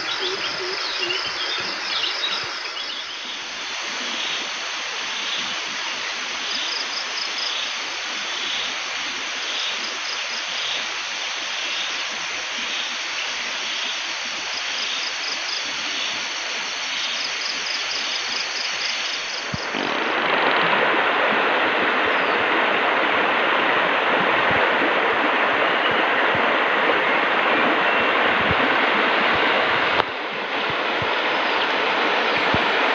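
Insects in the forest: a steady high buzz with a faint call repeating about once a second. About two-thirds of the way in it cuts to the louder, steady rush of a shallow river flowing over stones.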